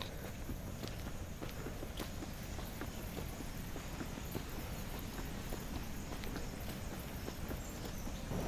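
Footsteps on a paved path at a steady walking pace, faint and even.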